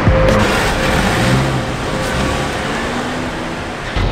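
A car running, heard as a dense rushing noise with music mixed in, easing off slightly toward the end.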